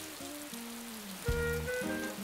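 Soft background music of held notes over a steady patter of rain, with lower notes joining and the music growing louder a little past halfway.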